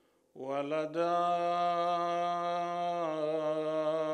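A man chanting Arabic devotional poetry. After a brief breath pause at the start, he holds one long drawn-out note, and the pitch shifts slightly about three seconds in.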